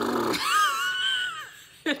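A person's voiced lip trill ('horsey lips') combined with a rolled R, a fluttering buzz that ends about a third of a second in, followed by a high-pitched squeal that rises and falls for about a second. The trill is a loosening exercise to check the lips and mouth are loose enough for flute playing.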